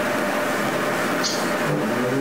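Steady rushing noise, about as loud as the talk around it, coming through a remote caller's online audio line while he pauses, with a brief faint hiss about a second in.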